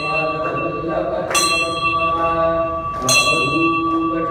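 A bell struck twice, about a second and a half in and again near the end, each strike ringing on with high, lingering tones, over a voice chanting a mantra in long held notes.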